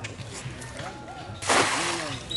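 A cast net slapping down onto a pond's surface: a short, loud splash about one and a half seconds in, lasting about half a second.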